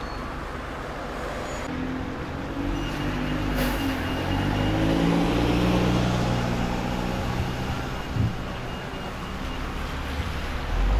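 Diesel engines of single-decker buses running as they move off and pull past close by, the engine note rising and falling. A brief hiss comes about three and a half seconds in, and a single knock a little after eight seconds.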